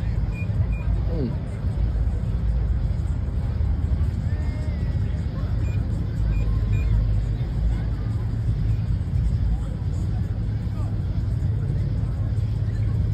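Car engines running steadily, a continuous low rumble, with indistinct voices of people around.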